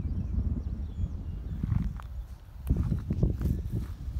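Wind rumble and handling noise on a hand-held phone microphone, with irregular footsteps through a cut hay field as the phone is swung around.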